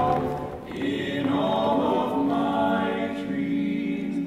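Musical-theatre chorus singing long held notes over a chamber orchestra, the chord thinning out near the end.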